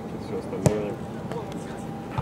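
A single sharp thud of a football being struck hard with the foot, a long cross kicked into the penalty area, with voices around it.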